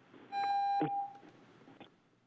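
A single electronic beep, one steady tone lasting about half a second, with a short click just before it stops, heard over conference-call audio.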